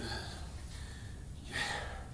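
A man's breathy gasp, a short sharp breath, about one and a half seconds in.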